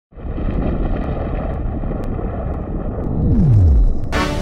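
Cinematic logo-intro sound effect: a dense low noise, like a heavy whoosh, that swells slightly toward the end, with a falling tone sweeping down to a deep low in the last second.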